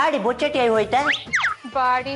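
Cartoon-style comedy sound effect: quick whistle-like glides sweeping up and down about a second in, after a strongly bending voice-like sound, over background music.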